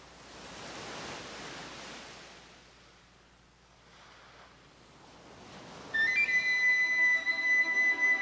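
A soft wash of surf swells and fades. About six seconds in, a flute from the film score comes in suddenly and loudly on a long held high note.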